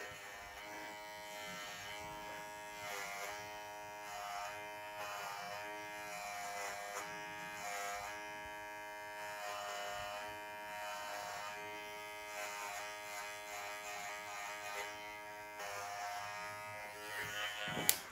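Cordless hair clippers buzzing steadily as they cut through long, wet hair, the hum swelling and dipping as the blades bite into the hair.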